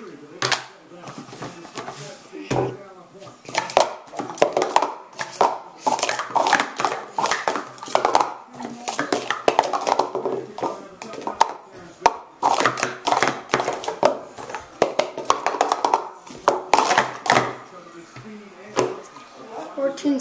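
Green Speed Stacks plastic sport-stacking cups clattering in rapid runs of clacks as they are stacked up into pyramids and down again on a stacking mat during a timed run.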